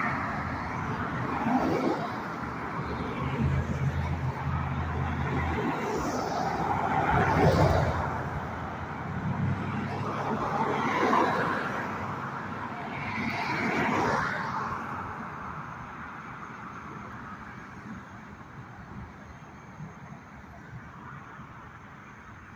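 Road traffic: about four cars passing one after another, each swelling and fading, with a low engine hum under the passes. The passes stop about two-thirds of the way in, leaving fainter steady traffic noise.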